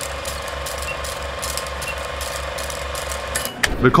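Film-projector sound effect under a countdown leader: a steady, evenly pulsing mechanical clatter with hiss. It stops about three and a half seconds in.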